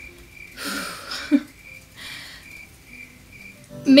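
Soft background music with a high note that repeats every half second or so, under two audible breaths, the first about half a second in and the second about two seconds in.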